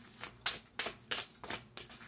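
A deck of tarot or oracle cards being shuffled by hand, a quick, even run of papery strokes about four a second.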